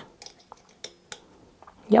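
A few light, sharp clicks and taps of a tool and fingers on the aluminium focuser bracket and its screws, as the screws are checked for tightness.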